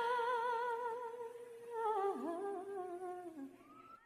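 A single high voice, unaccompanied, sings a long held note with wide vibrato, then a short falling phrase that trails off about three and a half seconds in.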